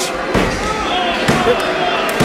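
Referee's hand slapping the wrestling ring mat during a pin count, twice, about a second apart.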